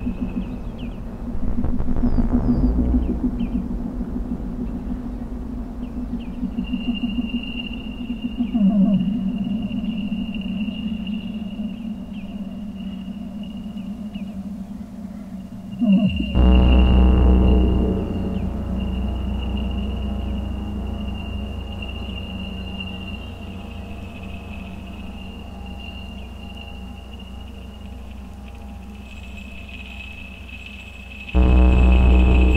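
Live electronic synthesizer music: sustained drones, a steady high tone over a low hum, with brief gliding pitches. About halfway through a deep bass swell comes in suddenly, louder, then slowly fades.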